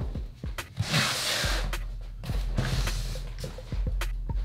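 Two spells of rustling packing paper and cardboard being handled, about a second in and again about two and a half seconds in, with a few knocks. Background music with a steady bass line plays underneath.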